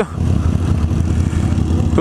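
Triumph motorcycle engine running steadily at low revs while the bike rolls slowly, heard as a low rumble under a light haze of noise.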